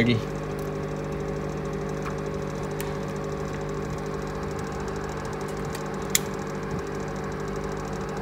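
Steady electrical hum of fans and a power supply running as a bench-tested MSI H81M-P33 motherboard is powered on. The CPU fan spins steadily, but the board gives no picture. A single sharp click comes about six seconds in.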